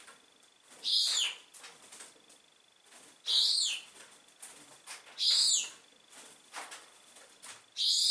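A bird repeating a high-pitched, falling squeaky call four times, about two seconds apart, with a faint steady high whine underneath.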